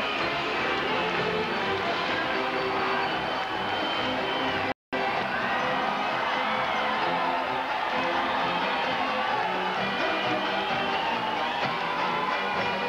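A Mummers string band of banjos, saxophones and accordions playing its parade show music with a steady beat. The sound cuts out completely for a split second about five seconds in, a dropout in the old tape.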